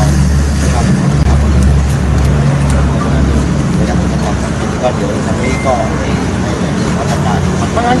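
A vehicle engine idling, a steady low hum, stronger in the first few seconds, under speech.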